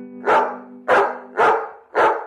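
Small dog barking four times in quick succession, short sharp barks about every half second.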